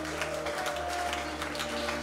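Worship music between sung lines: a keyboard holds steady chords, with scattered hand claps from the congregation.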